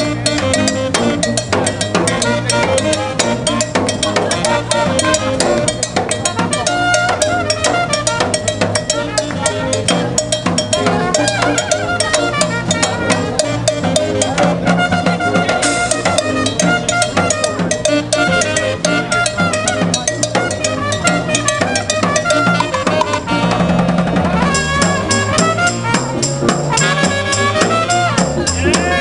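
A small jazz band playing live: saxophone and electric guitars over a snare drum keeping a steady beat.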